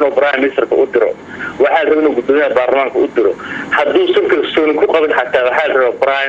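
Speech only: a man talking in Somali, with short pauses between phrases.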